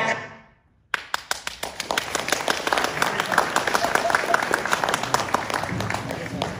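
Recorded music fades out in the first second, and after a brief silence an audience breaks into applause that carries on steadily.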